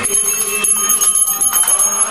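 Temple bells rung during an aarti: a rapid, continuous ringing of many quick strikes with no break.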